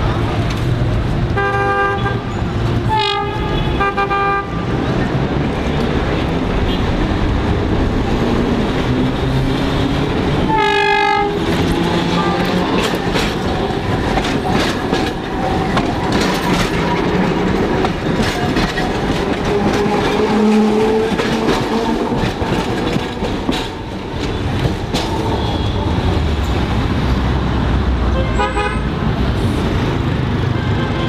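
A Ramleh-line tram running past close by in heavy street traffic, with a slowly rising motor whine through the middle. Short horn toots sound several times: a few near the start, a strong one about eleven seconds in, and another near the end.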